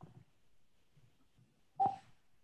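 A short electronic beep about two seconds in, the Discord new-message notification sound, over faint room tone.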